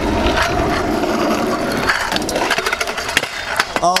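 Stunt scooter's small hard wheels rolling over rough asphalt, followed from about halfway by a quick run of clattering knocks as the scooter and rider come down on the road in a whip trick that is nearly landed.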